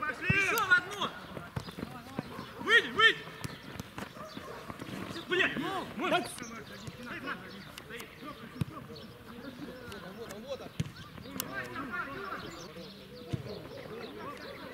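Footballers calling out to each other on the pitch in short bursts, with scattered sharp thuds of the ball being kicked.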